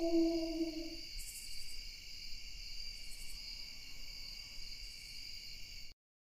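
A wolf howl trails off and ends about a second in, over a steady high-pitched chirring of crickets. The whole sound cuts off suddenly just before the end.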